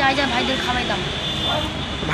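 A voice speaking briefly at the start, then fainter talking over steady background noise with a thin high-pitched whine.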